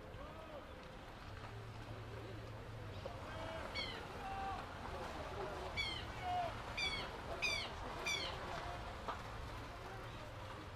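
Distant shouting voices across an outdoor rugby pitch. A short, high, falling call sounds five times in the second half, each one a sharp peak above the background.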